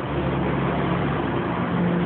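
City bus engine running close by: a steady low drone that starts abruptly.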